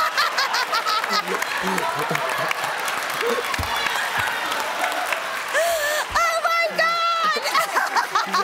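Studio audience laughing and clapping, with a woman's loud high-pitched laughter rising over the crowd near the end.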